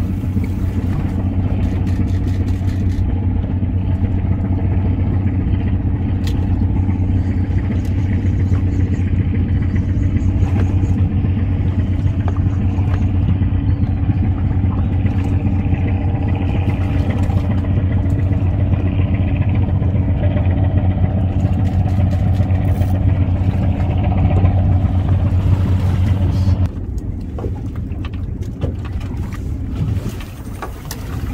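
A boat's 200 hp outboard motor running at a steady idle, a constant low hum under a wash of water and wind noise. The hum stops abruptly near the end, leaving only a quieter rush of wind and sea.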